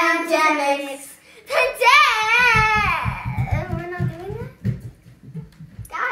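Children singing a song with long, wavering held notes, in two phrases. Under the second phrase there is a run of short low thumps.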